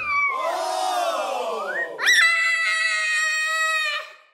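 A young girl screaming: a long wail that falls in pitch, then a sharp rise into a high, held scream.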